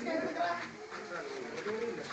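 Several people talking in the background, with no other clear sound.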